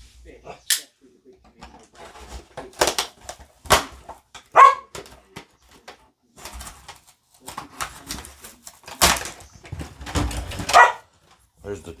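Cardboard box and plastic packaging crinkling, rustling and knocking as a small toy RC truck is pulled out of its box, in irregular bursts with a loud crunch about nine seconds in. Two short pitched squeaks come about four and a half seconds and eleven seconds in.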